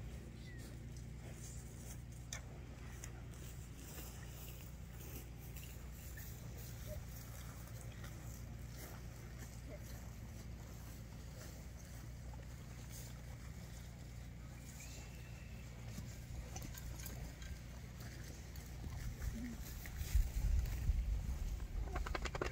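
Steady low outdoor rumble with a few faint clicks, growing into louder low buffeting about three seconds before the end.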